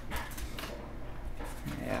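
Foil booster-pack wrapper crinkling briefly as it is handled in the hands, mostly in the first half second.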